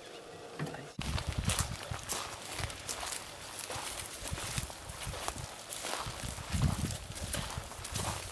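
Irregular footsteps and knocks with an uneven low rumble, starting abruptly about a second in.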